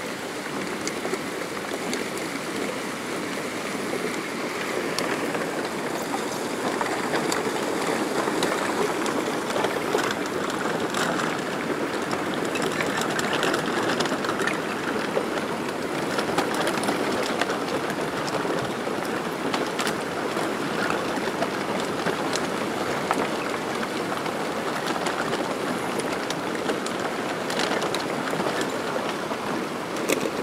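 Swollen, muddy river in flood rushing steadily past.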